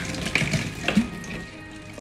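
Kitchen tap running into a stainless steel sink as plastic bottles are rinsed under the stream, with a few louder sudden sounds of the bottles being handled about half a second in and, loudest, about a second in.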